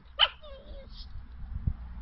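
Small dog giving one short, high-pitched yip while playing with a cat, followed by a softer whine and a dull thump near the end.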